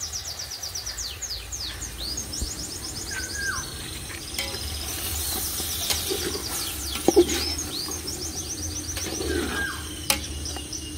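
Songbirds chirping: fast high trills and falling whistled notes that repeat over and over. There is a single sharp knock about seven seconds in.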